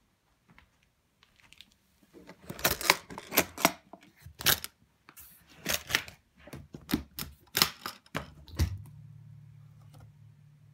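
Metal latches of a hard-shell guitar case being unsnapped one after another: a run of sharp clicks and snaps, followed near the end by a low steady hum as the case opens.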